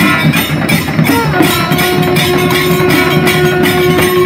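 Live procession band: drums beaten in a fast, steady rhythm while a wind instrument holds a long steady note from about a second and a half in.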